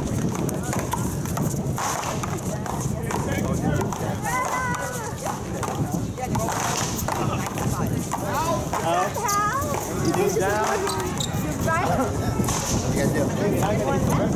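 Sharp pops of a Big Blue rubber ball struck by paddles and rebounding off the wall in a paddleball rally, mixed with people talking and calling out around the court.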